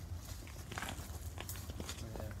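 Footsteps on bark mulch and leaves rustling as someone moves through a bed of turmeric plants: a few short soft crunches over a low steady hum.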